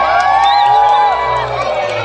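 Large crowd cheering and shouting, many voices overlapping and rising together, loudest through the middle, over a steady low hum.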